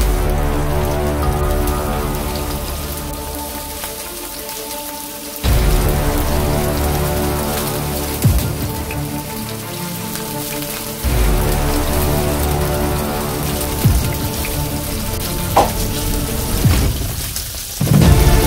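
Tofu frying in hot oil in a nonstick pan, a steady sizzle that jumps louder about five seconds in and again about eleven seconds in as more slabs go into the oil, with a few light clicks of chopsticks.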